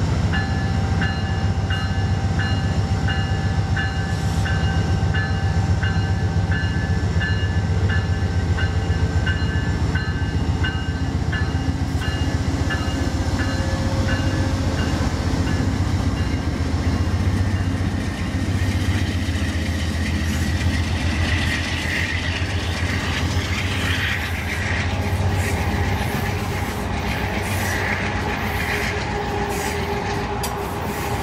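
Amtrak GE Genesis diesel locomotive passing with its bell ringing, about one and a half strokes a second, over a steady engine drone. The bell stops after about fifteen seconds, and the passenger cars roll by with wheels rumbling and clacking on the rails, with some higher squeal near the end.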